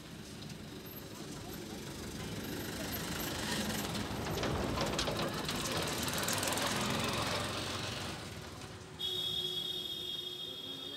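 Water streaming and splashing off a large khora lift net as it is hauled up out of the water. The sound swells over a few seconds and then fades. Background music starts suddenly about a second before the end.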